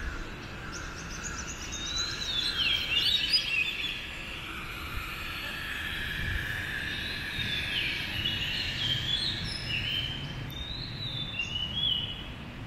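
Songbirds singing in trees, a series of quick chirps and short falling whistled phrases, loudest about three seconds in, over a steady low outdoor hum.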